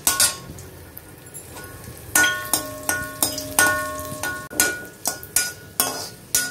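Stainless-steel perforated ladle clinking and scraping against a metal kadai. After a single strike at the start, a run of ringing metal-on-metal knocks comes about two to three a second.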